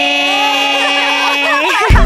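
Several young women cheering a long drawn-out "yeeey" together, their voices held and wavering. Loud music with a beat cuts in sharply near the end.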